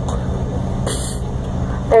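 Cabin noise of a regional jet taxiing: a steady low hum of the engines and air system, with a short sharp hiss about a second in.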